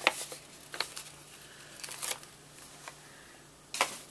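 Paper handling: a sheet of stickers being handled and a sticker peeled from its backing, heard as a few short crisp clicks and crinkles, the sharpest just after the start, with a brief rustle near the end.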